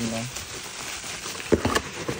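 Packing material in a cardboard shipping box crinkling and rustling as a hand rummages through it, with a few sharp crackles about a second and a half in.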